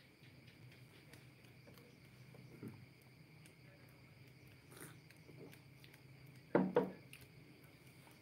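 Quiet room tone with a faint, steady high trill of crickets and a low hum. About two-thirds of the way in comes a short double knock, the loudest sound, with a few fainter small knocks and rustles around it.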